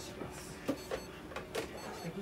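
A few short, light clicks and knocks from small objects being handled on a steel exam table.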